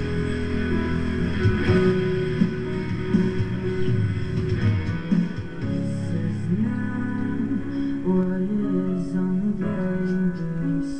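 Music with electric guitar. About halfway through, the heavy low end drops away and lighter held notes carry on.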